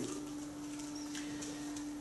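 A faint steady low hum, one unchanging tone held over quiet room hiss.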